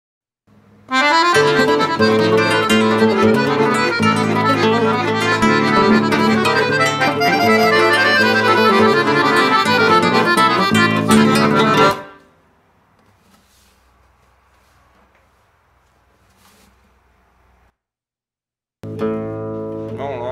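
Piano accordion and nylon-string acoustic guitar playing a fast, busy instrumental passage together, which stops abruptly about twelve seconds in. After several seconds of near quiet, the instruments sound a held chord near the end.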